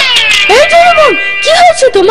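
Doraemon's dubbed cartoon voice crying in two long wails, each rising, holding and then falling away.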